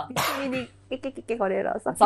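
A man coughs once to clear his throat, a short harsh burst near the start, with a few soft voice sounds after it.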